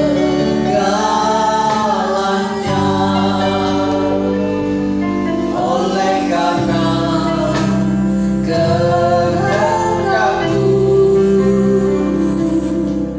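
A live church worship band playing a praise song: keyboard, electric guitars and drums under singing, with long held sung notes over a steady bass.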